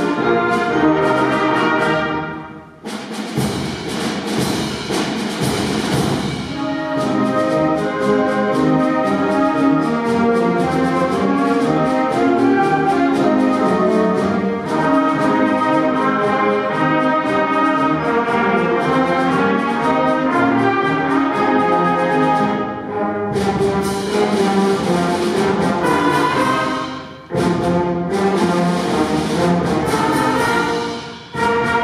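Student concert band of brass and woodwinds playing full, sustained chords with a moving melody. The sound breaks off briefly about three seconds in and again shortly before the end, each time coming back with a wash of noisy high sound over the chords.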